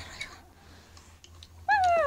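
A pet animal shut in a box calls once near the end, a short high call that rises and then falls in pitch, after faint handling taps.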